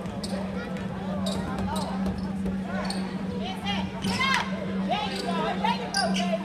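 A basketball bouncing on a hardwood gym court during a game, among voices from the crowd and players and sharp court noises, over a steady low hum.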